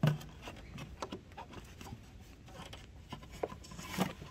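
Faint, scattered light clicks and rubbing of a hand fitting a small plastic piece back into a car's cabin air filter housing.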